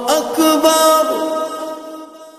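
Intro jingle with a chanted, sung vocal holding its last notes, which fade away near the end.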